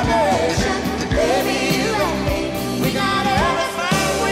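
Country ballad: a singer's voice gliding over a band's sustained chords, with a steady beat.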